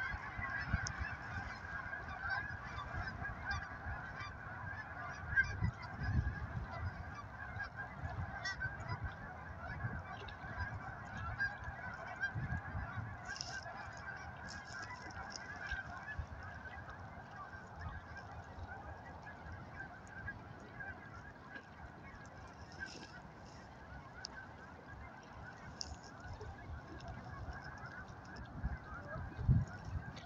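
A large flock of geese calling continuously in flight, a dense steady chorus of honks. A few low thumps stand out, the loudest near the end.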